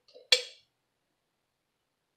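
A single short clink of a metal utensil against the mouth of a glass jar.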